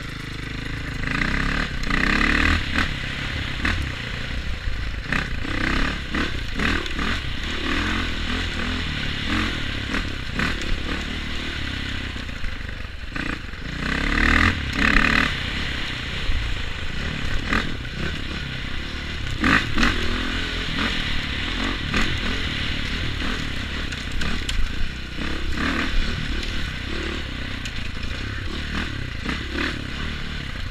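Dirt bike engine heard from the rider's helmet as the bike is ridden along a rough forest trail, the revs rising and falling with surges of throttle. Knocks and rattles from the bike bouncing over the rough ground run through it.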